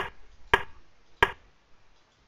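Three sharp computer-mouse clicks in the first second and a half, stepping forward through the moves of a replayed chess game on screen.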